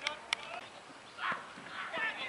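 Two sharp clicks close together, then distant voices calling out twice over the open-air hum of a cricket ground.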